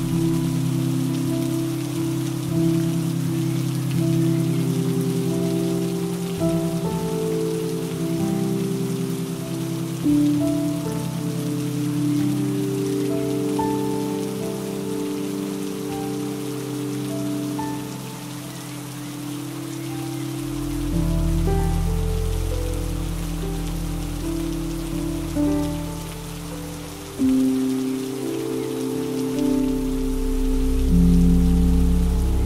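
Steady hiss of rain mixed with slow music of long held chords and a few higher melody notes; a deep bass layer comes in about two-thirds of the way through.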